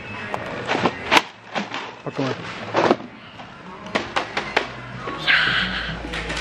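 Irregular sharp clicks and knocks of plastic sweet tubs being handled on a shop shelf, heard over voices and background music.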